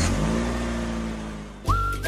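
Car engine revving up and then fading away, with a short rising whistle near the end.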